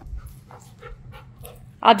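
A dog panting softly in a run of quick, short breaths. A man's voice cuts in near the end.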